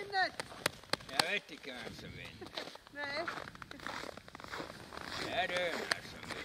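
A few people's voices in short, indistinct bursts, with a few sharp clicks in the first second or so.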